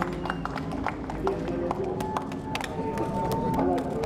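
A small group of people cheering and shouting, with scattered claps and clicks throughout. One long drawn-out shout runs through the second half.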